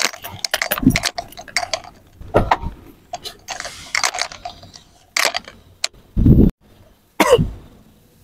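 Scattered clicks, knocks and rustling of a person climbing past the seats of a van and settling into a rear seat, with a few louder thuds from the seat and body against it.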